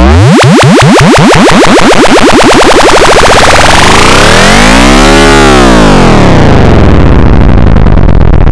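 Very loud, distorted electronic synthesizer sound whose pitch keeps sweeping: a steep rise at the start, then another dip and rise in pitch near the middle before it slides back down.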